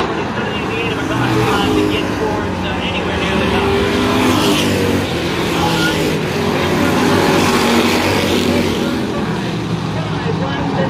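A pack of street stock race cars racing around a short oval, their engines blending into one continuous drone whose pitch rises and falls as the cars pass through the turns.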